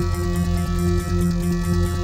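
Electronic drone music: layered, sustained electronic tones held steady over a deep, even hum, without beat or melody.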